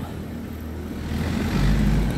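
Diesel engine of a motor grader running on the roadworks, its low rumble growing louder about one and a half seconds in.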